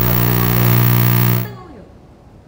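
A loud, steady buzzing drone with many overtones and faint voices beneath it, cutting off suddenly about one and a half seconds in. Quiet background sound follows.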